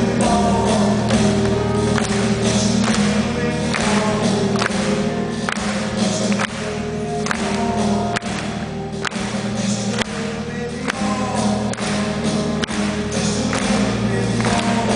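A soft-rock band playing live through an arena PA, with drums, bass and acoustic guitar, recorded from far back in the audience so the sound is echoing.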